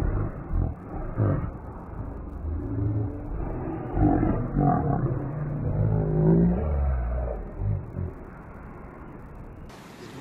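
Muffled shouting and yelling from a group of men, over a low rumble; the voices rise and fall in the middle seconds and fade near the end.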